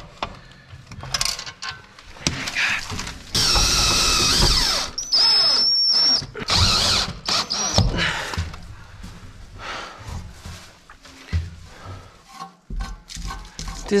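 Cordless drill driving screws. A sustained run of about a second and a half comes a few seconds in, followed by several shorter whining bursts, with handling knocks later.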